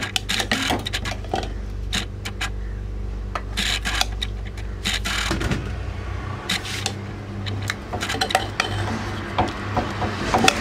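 Metal ladle clinking and scraping irregularly against the sides of an aluminium pot while boiled corn cobs are turned and lifted in their water, over a steady low hum.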